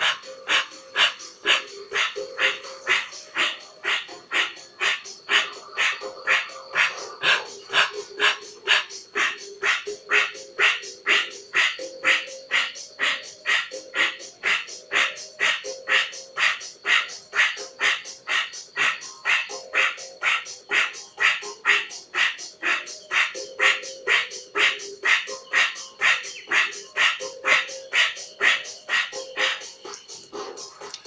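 Rapid, forceful rhythmic breathing, the 'fire breath' pranayama: sharp pumped breaths at about two a second, kept up evenly throughout.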